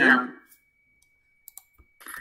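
Two faint computer mouse clicks about a second and a half in, amid near silence with a faint steady high tone, after a man's voice trails off.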